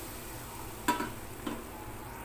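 Hot tadka oil with cumin and fenugreek seeds sizzling steadily on the surface of kadhi in an aluminium pot, just after being poured in. Two light clicks come about a second and a second and a half in.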